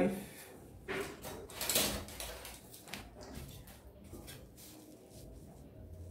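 Pattern-drafting tools handled on fabric over a wooden table: two short scrapes about one and two seconds in, then fainter light taps and rubs as a tape measure is moved aside and a plastic curve ruler is set down on the cloth.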